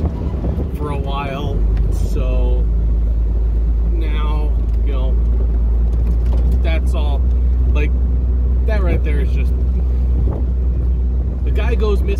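Jeep engine and road noise heard from inside the cab while driving: a steady low drone that drops in pitch about a second and a half in.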